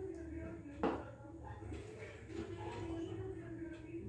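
A single sharp clack about a second in: a carrom striker flicked across the board and striking the carrom men. Under it run a low steady hum and faint background voices.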